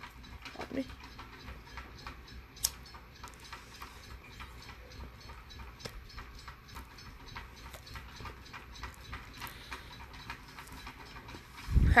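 Low room noise with faint, irregular clicks and rustles from close handling, and one sharper click about two and a half seconds in.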